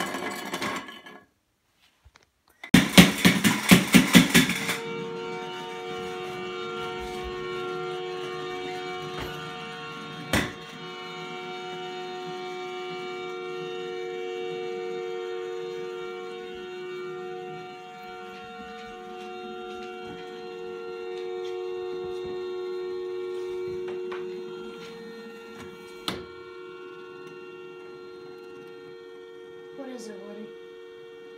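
Tin pump-action humming top: a quick run of rapid pulses as it is pumped up, then a steady two-note hum that swells and fades slightly while it spins. Two sharp knocks sound partway through.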